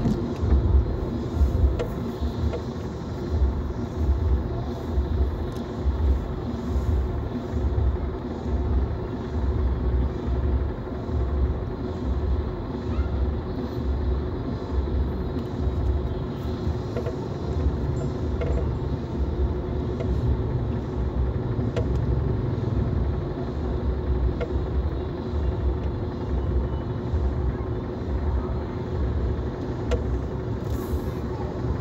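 Low rumble of a car in slow traffic, heard from inside the cabin, with a steady low thumping about twice a second under it.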